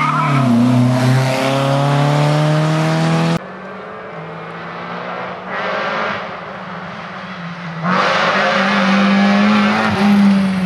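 Rally car engine at full throttle accelerating out of a corner, its pitch climbing steadily, cut off suddenly about three seconds in. After a quieter stretch with a distant car, a second rally car, a small hatchback, goes past close at high revs from about eight seconds in, its engine note held steady.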